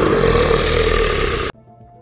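A loud, harsh, noisy sound effect that starts abruptly and is cut off suddenly after about a second and a half.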